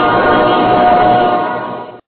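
A group of voices singing the closing theme song, holding its final chord, which fades out near the end.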